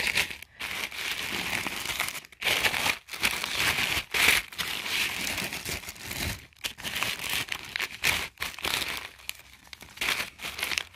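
Tissue paper crinkling and rustling as it is unfolded and pulled away by hand, in irregular spurts with short gaps, a little quieter near the end.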